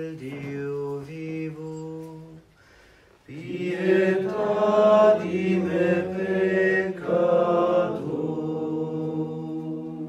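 A man chanting a prayer in long, drawn-out notes. The chant breaks off briefly about two and a half seconds in, then comes back louder and fuller.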